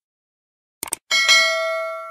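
Sound effect of an animated subscribe button: a quick double click, then a bright bell ding that rings on and slowly fades as the notification bell icon is clicked.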